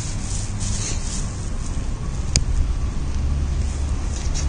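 Steady low rumble with a high hiss, and one sharp click a little past halfway.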